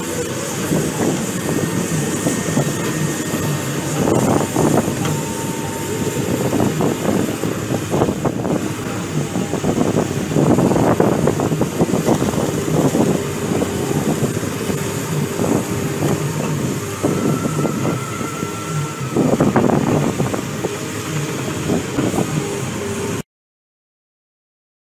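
Diesel engine of a Cat amphibious swamp excavator running under load as its pontoon tracks haul it out of the water up a bank, rising in loudness several times. The sound cuts off suddenly near the end.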